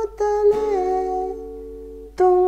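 Acoustic guitar chord strummed about half a second in and left ringing, under a man's held sung note that bends down and trails off a little past halfway.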